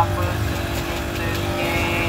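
Steady low roar of gas stove burners heating several apam balik pans, with a faint steady hum over it.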